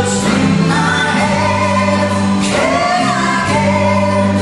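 A female and a male singer singing a duet live over a symphony orchestra with strings, holding long notes that bend in pitch.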